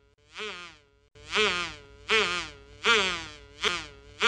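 A buzzy electronic note repeating about every three quarters of a second, each note gliding in pitch. The notes are faint at first and much louder from about a second in, with a short sharp blip near the end.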